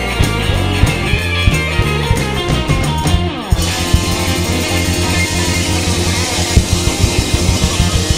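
Live rock band playing an instrumental passage: electric guitar over bass and drum kit with a steady beat. About three seconds in, a pitch slides downward and the sound briefly dips, then the band comes back in fuller, with cymbals ringing.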